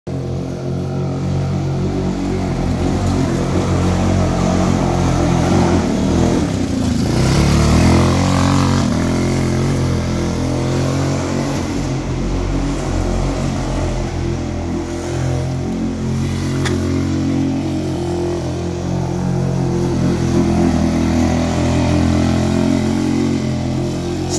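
150cc TrailMaster go-kart's single-cylinder engine running and revving as the kart drives through very wet mud, the pitch and loudness rising and falling, loudest about eight seconds in.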